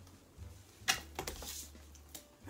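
Soft handling noises of playing cards and a board on a tabletop: one sharp tap about a second in, then a few lighter taps, over a low steady hum.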